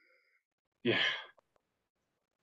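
A single breathy, sighed "yeah" about a second in, followed by two faint clicks, with silence around them.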